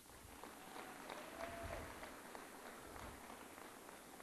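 Faint audience applause: many scattered hand claps blending into a steady patter.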